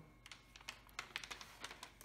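Faint, irregular light clicks and crackles of a diamond-painting canvas and its plastic cover sheet being handled, as the curled sheet is worked flat.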